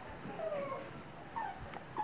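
Faint animal calls: a few short whines that fall in pitch, spaced out over a low background hum.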